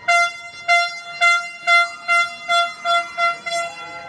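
An air horn blown in a rapid run of about nine short blasts, a little over two a second, each one the same steady high note; blasts like these are a fan's celebration.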